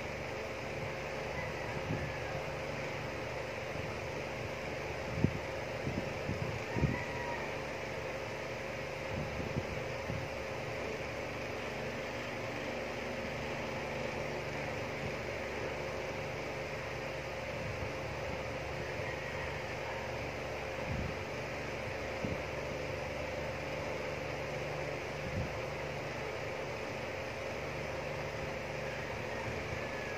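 Steady room noise: an even hiss and hum with one steady tone, like a running fan. A few soft knocks come about five to seven seconds in, and fainter ones later.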